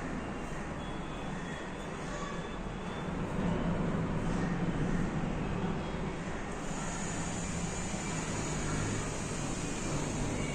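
A steady rumble of passing motor traffic heard from outside, growing louder for a few seconds in the middle and then easing back.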